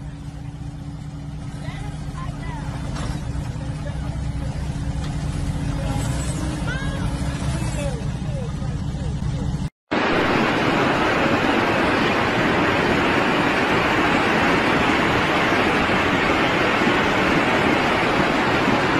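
A car engine running with a steady low hum that slowly gets louder, with faint voices over it. About ten seconds in it cuts off abruptly and gives way to a louder, steady rushing noise.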